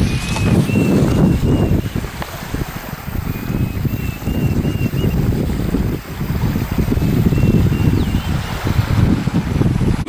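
Wind buffeting the microphone: a loud low rumble that swells and dips in gusts. A faint, thin high whistle sounds briefly twice in the first half.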